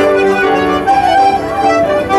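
A band playing a tune, the melody moving in held notes over a steady accompaniment.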